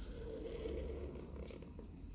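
Black felt-tip Pigma marker drawn across paper in one long stroke, a soft scratchy rasp lasting about a second, then a few light ticks of the pen tip.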